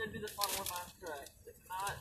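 Quiet talking, with the crackling rustle of a paper food bag being handled.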